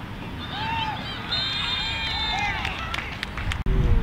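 Voices of players and spectators shouting on a football field, with a referee's whistle blown in one steady blast of about a second, starting about a second and a half in. Near the end the sound cuts out briefly and returns with low wind rumble on the microphone.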